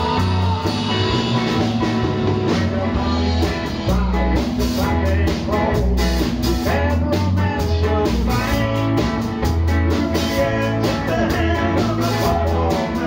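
Live blues-rock band playing: electric guitar and bass guitar over a drum kit with cymbals struck on a steady beat, with an acoustic guitar strummed along.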